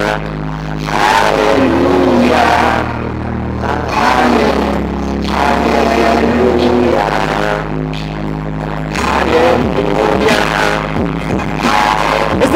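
A man singing into a microphone over a loud backing track played through a PA system, with deep held bass notes that change every two to three seconds.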